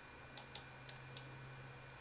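A few faint, separate clicks of a computer mouse and keys being worked, over a low steady hum.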